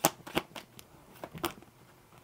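A deck of tarot cards being shuffled by hand: a run of irregular light slaps and clicks as cards drop onto the pack, thinning out and stopping near the end.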